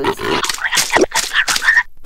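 Cartoon sound effects and character noises from an animated TV promo: short irregular squeaks with a few rising chirps near the end, then a brief drop-out just before a cut.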